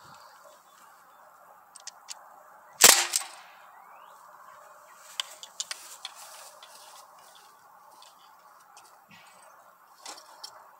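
A single shot from a Sig Sauer MPX ASP CO2 air rifle running on a 12-gram CO2 adapter: one sharp crack about three seconds in, with a brief ring-out after it. A couple of faint clicks come just before the shot.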